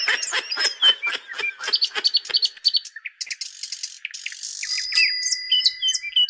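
Birds chirping in a rapid, busy chorus of short calls, with a few long, clear whistled notes near the end.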